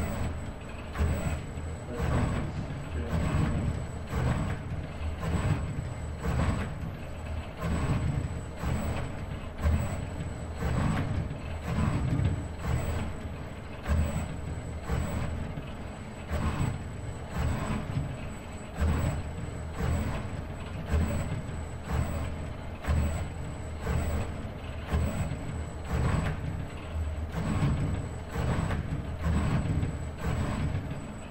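ABB IRB120 six-axis robot arm's servo motors running as it moves a paintbrush between the paint cups and the paper: a steady mechanical hum with a faint high whine, pulsing regularly a little over once a second.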